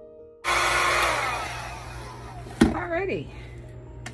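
Electric fan blowing, starting abruptly and dying away over about two seconds over a steady low motor hum. A sharp click follows near the middle.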